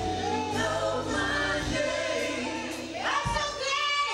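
Women's gospel choir singing in unison over sustained low accompaniment.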